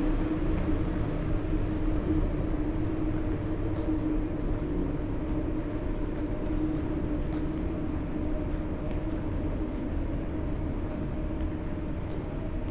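A steady low mechanical hum and rumble with a constant drone. A few faint high chirps come in about three seconds in and again near the middle.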